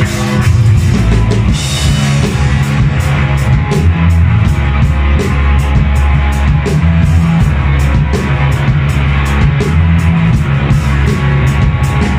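Rock band playing live, an instrumental stretch: drum kit keeping a fast, steady beat on the cymbals under electric guitars and heavy bass notes.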